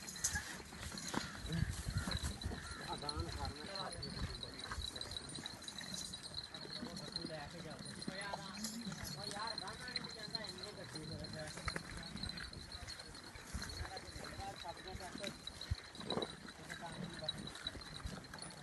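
A herd of Amritsari goats bleating, with several quavering calls, over hoof steps and shuffling on dry ground. A thin steady high tone runs underneath.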